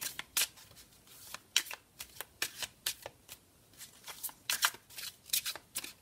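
A deck of Sibilla oracle cards being shuffled by hand: irregular quick card slaps and flicks as bunches of cards are passed from hand to hand.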